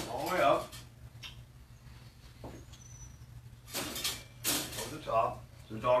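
Metal wire dog crate door rattling as it is handled, with two short clattering bursts about four seconds in.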